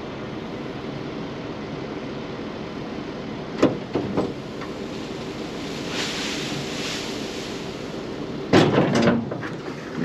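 Tractor and self-loading forage wagon unloading chopped grass onto a silage heap: a steady engine and machinery drone, with a hiss of grass pouring out of the open rear about six seconds in. Sharp knocks come about three and a half seconds in and again near the end.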